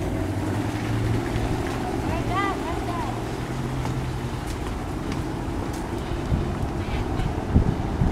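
An engine drones steadily and low in the background, fading somewhat after about four seconds. About two seconds in, a few short rising-and-falling whistle-like calls sound.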